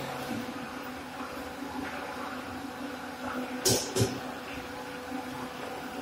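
Fly ash brick plant machinery running with a steady hum. Two short, sharp noises come close together a little after the middle.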